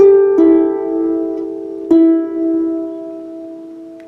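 Lever harp playing three plucked notes of a slow melody, the last about two seconds in, each left to ring and fade.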